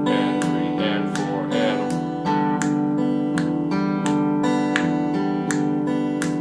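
Acoustic guitar fingerpicked on open strings in a steady, even pattern of single plucked notes, about two a second, each ringing into the next. A bass note is plucked by the thumb and answered by higher strings.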